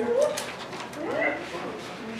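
Faint voices off the microphone, with one rising-pitched utterance about a second in.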